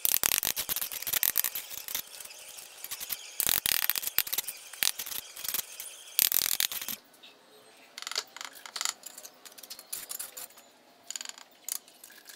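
Steel trowel scraping mortar and tapping on red clay bricks as they are set, with bricks clinking against each other. A dense run of scrapes and knocks gives way, about seven seconds in, to sparser, quieter taps.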